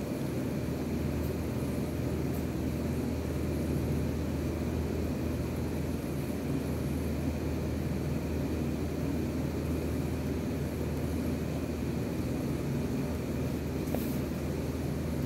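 A steady, even low hum and rumble of background noise with no distinct events.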